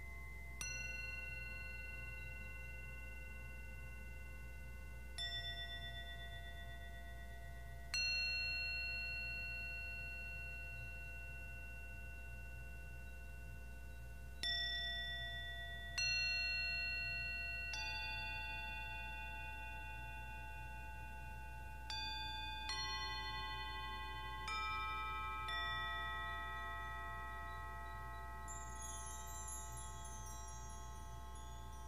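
Small tuned metal bowls struck one at a time with a mallet, about ten strikes at an unhurried, irregular pace. Each strike rings on in long, clear tones that overlap into a layered sound, and a faint high shimmer comes in near the end.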